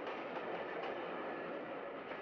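Steady, even background noise with no clear pitch or beat, like a continuous ambience bed.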